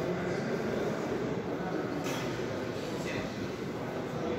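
Steady low background hubbub of a large sports hall, with faint voices in it.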